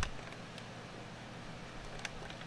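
Steady low hum and hiss of room tone, with a sharp click at the start and another near the end.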